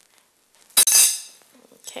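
Metal clinking against a glass mixing bowl of marinating chicken: one sharp clink a little under a second in, with a short ring.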